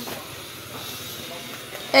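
A faint, steady hiss of background noise with no distinct events, and a voice starting right at the end.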